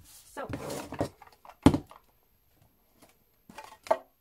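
A single sharp thunk on the tabletop about one and a half seconds in, from a grey lidded card storage box being handled.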